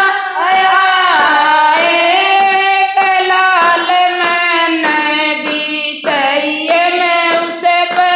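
Women singing a Haryanvi devotional bhajan in unison, with steady hand claps keeping the beat about one and a half times a second.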